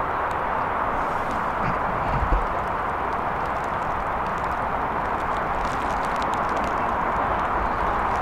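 Steady rushing outdoor background noise, with one short low thump a little over two seconds in and a few faint clicks later on.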